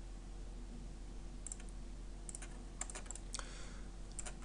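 A few soft clicks from the computer's mouse and keys, most of them in the second half, over a steady low electrical hum.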